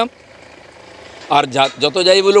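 Faint, slowly rising noise of a car approaching, heard in a pause in a man's speech. His voice comes back a little over a second in.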